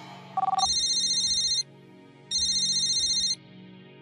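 Mobile phone call ringing: a short two-note electronic beep, then two electronic rings of about a second each with a short pause between.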